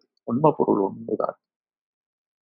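A man's voice speaking a short, soft phrase for about a second, then silence.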